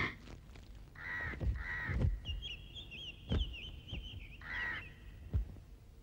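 Birds calling: three short, harsh calls about a second apart and again near the end, with a faint, wavering high twitter running between them. A couple of light knocks sound in the middle and near the end.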